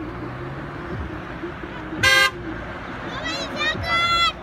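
Car horns tooting as a convoy of cars drives past over a steady engine and road rumble: one short blast about halfway through, then a second, higher-pitched toot at the end.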